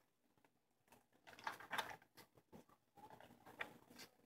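Faint rustling and brushing of thick paper pages as a handmade junk journal is leafed through, a few soft strokes about a second and a half in and again near the end; otherwise near silence.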